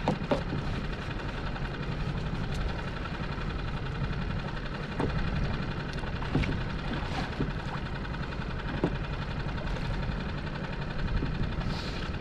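Longline pulled in by hand over the side of a dinghy: a steady low rumble runs throughout, with scattered light knocks and splashes from the line and the boat.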